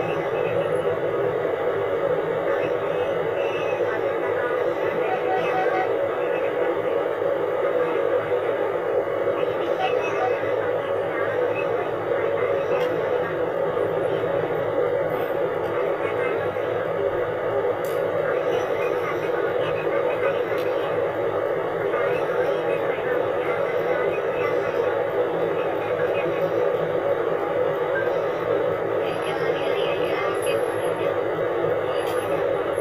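A person's voice talking on without a break, with little treble.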